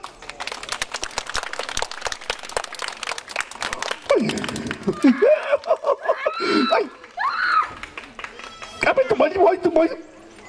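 Audience clapping fast and continuously like a drumroll for about four seconds, then thinning out as children's voices call out and exclaim, one with a rising whoop.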